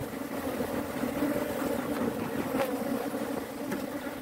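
Steady hum of a honeybee colony buzzing over the open hive's frames.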